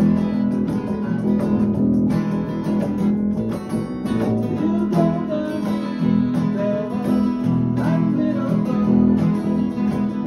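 Acoustic guitars strumming a blues in E during a jam. About halfway through, a higher melody line with bending notes rises over the strumming.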